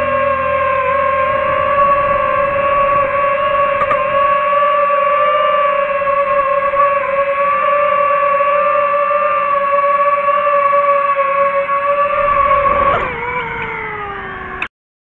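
DJI FPV drone's motors and propellers whining at a steady pitch. Near the end the pitch slides down as the motors spin down.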